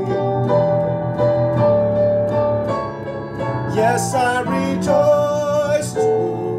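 A man singing a slow worship song over piano accompaniment, holding long notes, then bending through a wavering vocal run about four seconds in.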